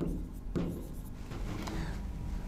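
A pen writing on a board: faint scratching strokes as a date is written out in figures.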